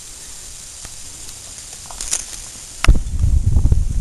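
A quiet steady hiss, then a sharp knock just before the three-second mark followed by loud low rumbling: handling noise on the camera's microphone as the camera is moved.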